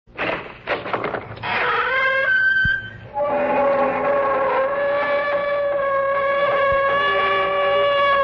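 Creaking-door sound effect: a few short clicks, then a long, grating door creak that shifts in pitch and then holds one drawn-out pitch for several seconds.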